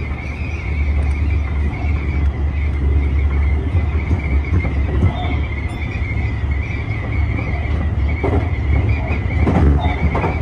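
Running noise heard inside the cab of a Tobu 50000-series electric train at speed: a steady low rumble with a thin, steady high whine over it, and a few clatters near the end.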